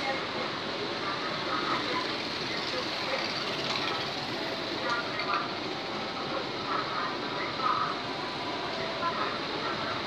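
The KA Harina passenger train's coaches rolling past over a level crossing: a steady rumble and hiss of wheels on rail. Waiting motorcycles idle close by, and people talk indistinctly.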